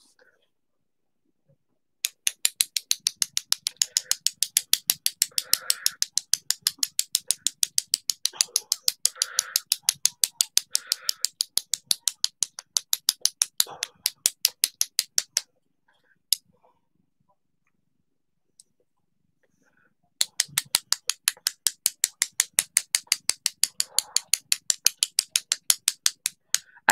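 Rapid, even clicking of two paintbrush handles knocked together, about five taps a second, flicking white paint speckles onto a canvas. A long run of tapping stops briefly past the middle, and a second run starts again about three-quarters of the way through.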